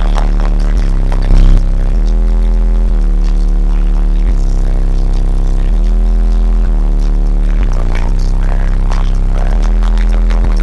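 Bass-heavy music played at extreme volume through a wall of eight Fi Audio Delta 15-inch subwoofers, heard from inside the car's cabin. Deep held bass notes shift pitch every second or two, and the sound stays pinned near the recording's ceiling.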